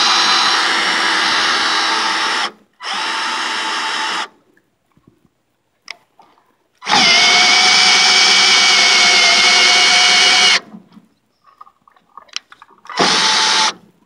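Greenworks cordless drill with a 19 mm socket driving the height-adjustment shaft of a Harbor Freight portable sawmill, moving the saw head up or down. It makes four runs with a steady whine: one stopping about two and a half seconds in, a shorter one just after, a longer run of nearly four seconds in the middle, and a brief one near the end.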